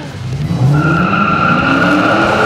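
Dodge Challenger's 5.7-litre HEMI V8 revving up with rising pitch as its tyres spin and squeal in a steady high screech, starting about half a second in.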